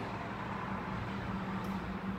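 A steady low hum over a faint even rumble of background noise.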